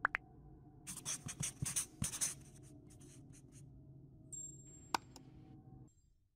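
Felt-tip marker scribbling sound effect: a run of quick scratchy strokes about a second in and a few more around three seconds, over a faint low hum. A sharp click comes at the start and another near the end.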